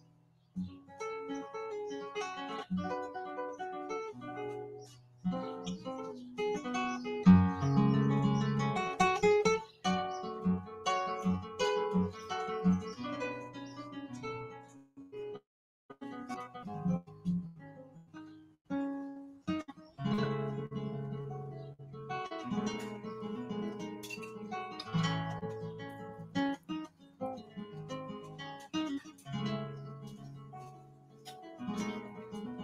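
Solo classical guitar played in a flamenco/classical style, fingerpicked single-note lines and chords in phrases with brief pauses between them, the loudest chord passage about seven seconds in.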